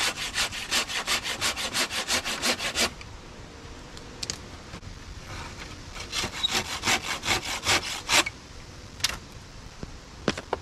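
Hand saw cutting through a wooden branch in quick back-and-forth strokes, several a second. The sawing runs for about three seconds, stops for a couple of seconds, starts again for another run, and ends with a single stroke near the end.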